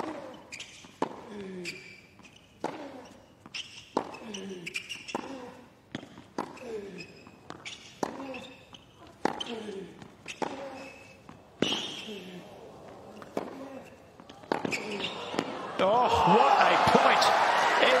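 Tennis rally: a racquet strikes the ball about once a second, each hit followed by a player's short grunt. From about fifteen seconds in, the crowd applauds and cheers loudly as the point is won with a forehand volley.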